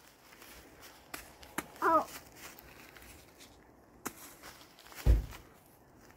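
Beanbags thrown at a row of plastic basket cups land on dry leaf litter: a few faint taps and a soft thud about five seconds in.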